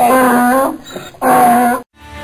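Donkey braying: two loud, held, honking calls about a second apart, with quieter rasping in-breaths between them.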